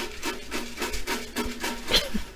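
Paper name slips being shaken in a container, a rhythmic rattle of about five shakes a second, with a simple low tune of short steady notes going along with it.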